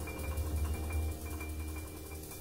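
Background music with mallet percussion, marimba- or xylophone-like, over a steady bass and a regular beat.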